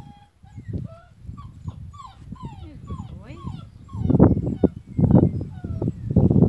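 A six-week-old tricolour basset hound puppy whining in a run of short, high-pitched cries that bend up and down. In the last two seconds a louder, low rumbling noise takes over.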